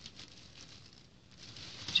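Faint rustling and crinkling of a thin plastic carrier bag as a hand works at its tied handles.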